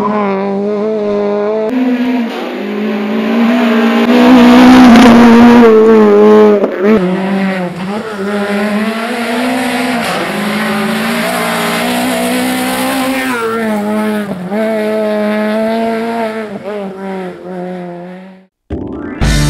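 Peugeot 208 rally car's engine revving hard at full throttle, its pitch climbing and dropping again and again with gear changes and lifts off the throttle. It is loudest about four to six seconds in.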